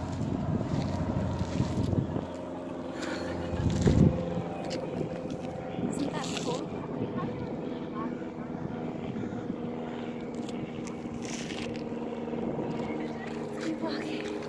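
A steady engine drone with gusts of wind buffeting the phone's microphone, the loudest gust about four seconds in.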